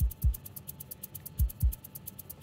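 Tense background music: two pairs of low double thumps, like a heartbeat, about a second and a half apart, over a fast, steady high ticking.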